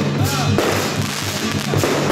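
Dragon-dance percussion: a drum beating steadily at about four to five strokes a second, with loud crashing hits scattered over it.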